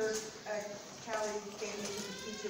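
Indistinct talking voices, people speaking in a room, too unclear for words to be made out.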